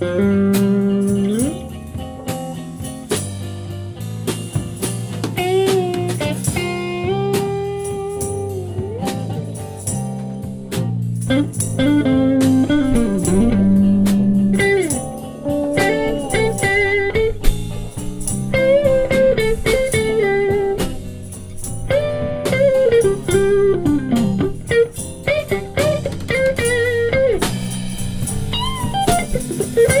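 Live blues band playing a slow instrumental passage: electric guitars, bass and drums under a lead line that bends and slides in pitch. In the second half a saxophone holds wavering lead notes.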